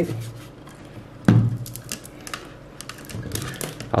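A small satellite speaker and its cable being handled and moved about on a tabletop: a run of light clicks and one louder knock about a second in.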